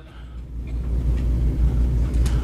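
A deep, low rumble that swells over the first second and then holds steady.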